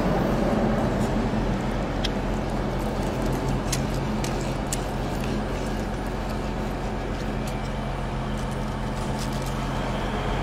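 A motor vehicle engine running steadily at idle: a low, even hum that eases off slightly, with a few faint clicks over it.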